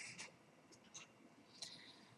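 Near silence: room tone with a few faint, short ticks scattered through it.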